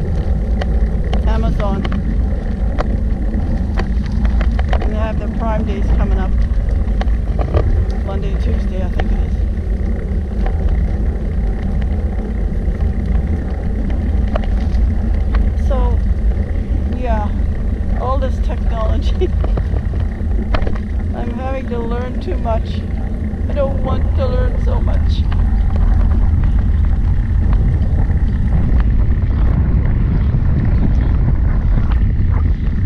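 Steady, heavy low rumble of wind and road noise on a trike-mounted GoPro's built-in microphone while riding a recumbent trike, with a woman's voice faintly heard now and then under it.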